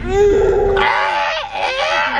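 Nonverbal human vocal sounds: a drawn-out nervous groan, then laughter.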